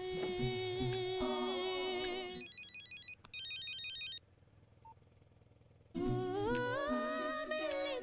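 Film song with voices holding a note, cut off about two and a half seconds in by two short bursts of an electronic mobile-phone ringtone trill. After a gap of near silence, the music and voices come back in, rising in pitch.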